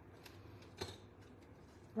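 Quiet hand-crafting sounds with one sharp light click a little under a second in, as a plastic-handled pick tool is set down on the craft table.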